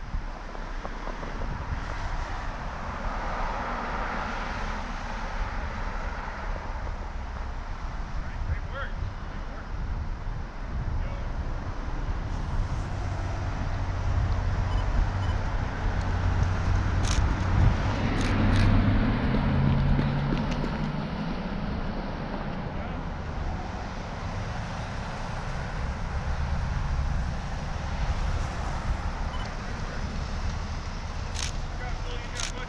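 A car engine passing over a steady outdoor road noise, building from about twelve seconds in, loudest around eighteen seconds as its pitch rises, then fading.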